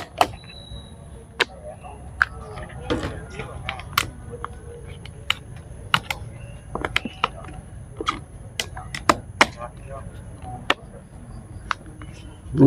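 Scattered, irregular clicks and knocks of objects being handled on a table, a few of them sharp and loud, with faint voices in the background.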